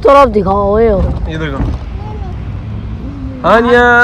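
A voice calling out loudly twice, once at the start and again near the end, each for under a second, over the steady low rumble of a car driving, heard from inside the cabin.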